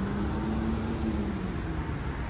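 Low, steady vehicle rumble with an engine hum that holds one pitch and fades out near the end.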